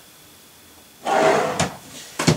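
A drawer being slid with a scraping rub, then knocked, about a second in after a quiet moment, as someone rummages through it.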